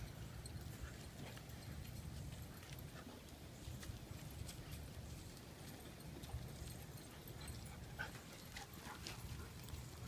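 Faint sounds of several dogs moving about on a dirt yard: scattered paw falls and light clicks over a steady low rumble on the microphone.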